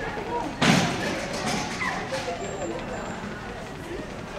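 Metal agility teeter-totter board tipping under a running Labrador retriever and banging down onto the floor once, a little over half a second in.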